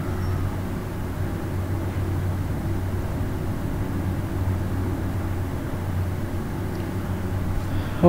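A steady low hum under an even background noise.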